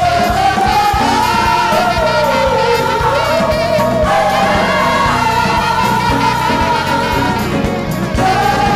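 Gospel choir singing held, wavering notes, backed by keyboard and a band with a steady beat.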